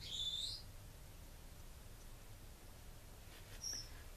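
A bird chirping twice: a short wavering high chirp at the start, and a shorter, higher one near the end, over a faint low room hum.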